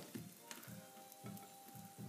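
Faint, steady fizzing hiss of vinegar and baking soda reacting inside a sealed jam jar, giving off the carbon dioxide fed through a straw toward a candle flame.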